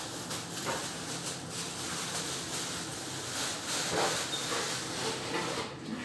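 Disposable plastic apron being taken off, a steady rustling and crinkling of thin plastic with a few faint crackles.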